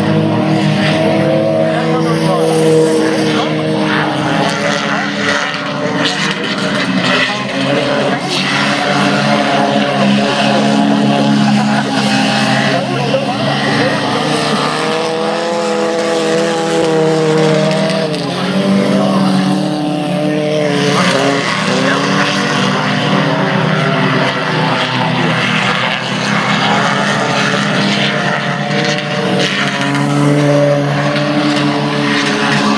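Junior sedan race car engines running on a dirt speedway oval, their pitch rising and falling without a break as the cars accelerate down the straights and ease off into the turns.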